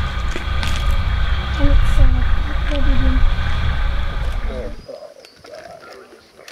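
Safari 4x4 vehicle's engine running with a low rumble, with faint voices over it, cutting off suddenly a little before the end.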